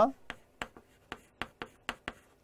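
Chalk writing on a chalkboard: a quick series of short tapping strokes, about three or four a second.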